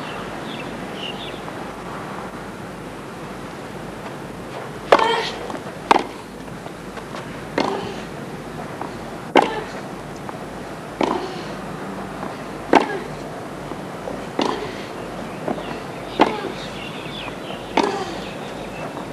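Tennis rally on a hard court: rackets striking the ball back and forth, sharp single hits about every one and a half to two seconds starting about five seconds in, over a steady background hiss.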